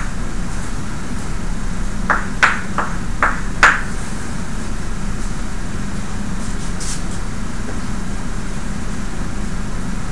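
Steady lecture-room hum, with five short sharp taps in quick succession between about two and four seconds in.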